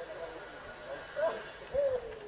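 Birds calling: soft, hooting coos that waver up and down in pitch and overlap one another.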